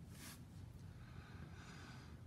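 Near silence over a low room hum, with one brief soft rustle just after the start from gloved fingers handling a trading card, and a faint hiss later on.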